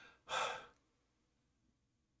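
A man's single short breath out, audible for about half a second near the start, with no pitch to it.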